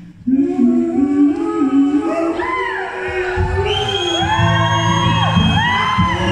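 Live singing, unaccompanied at first, with a nylon-string acoustic guitar coming in about halfway through.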